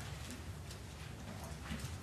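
Paper pages of a Bible being leafed through at a lectern, a few faint rustles and flicks over a steady low room hum.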